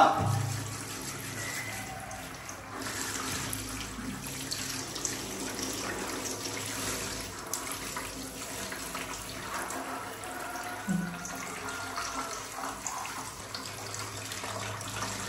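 Water running steadily from a handheld shower head, splashing into a plastic baby bathtub while a baby monkey is rinsed.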